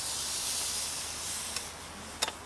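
Ouija board planchette sliding across the board under fingertips: a soft, hissing scrape that fades out near the end, with a faint tick about one and a half seconds in.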